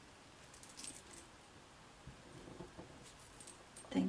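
Faint handling sounds: a few light clicks and jingles as a clear acrylic stamp block is pressed and lifted on cardstock, about a second in and again near three seconds in.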